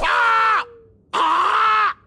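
A man's cartoon voice yelling "Ahhh! There!" in two loud shouts. A thin whistle-like tone slides steadily downward under the first shout and fades out about a second in.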